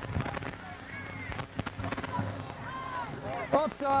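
Stadium background of crowd noise and scattered distant voices during a stoppage in play. A few short knocks or claps fall about a second and a half in. Near the end the referee starts announcing the offside penalty over the public-address system.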